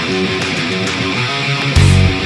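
Background rock music: an electric guitar playing a run of notes after a short break, with the heavy bass and drums coming back in near the end.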